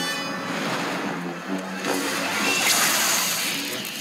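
Film soundtrack: music with a steady rushing roar of sound effects under it, carrying on from the duel dialogue clip of the outro.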